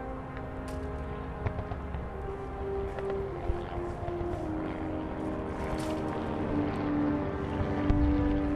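Slow orchestral-style film score of long held low notes that step down in pitch over a low rumble.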